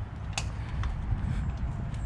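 Low rumble of wind and handling noise on a handheld camera microphone, with a sharp click about half a second in and a fainter tick shortly after, like footsteps on concrete.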